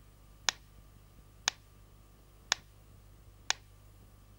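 Pyramid-shaped clockwork metronome ticking at about one tick a second, four sharp ticks in all.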